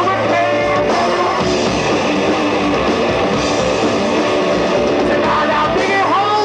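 Rock band playing live, electric guitar to the fore over bass and drums, loud and steady.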